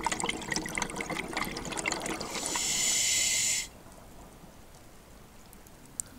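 Scuba diver breathing through a regulator underwater: a bubbling gurgle of exhaled air for about two seconds, then a steady hiss of inhaled air for about a second and a half that cuts off suddenly.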